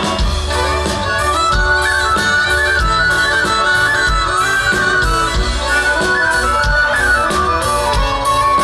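Live folk band playing an instrumental passage: a fiddle-led melody over double bass, with a steady dance beat.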